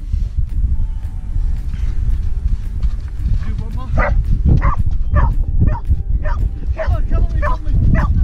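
Dog barking repeatedly, about two barks a second starting about three and a half seconds in, over a heavy rumble of wind buffeting the microphone.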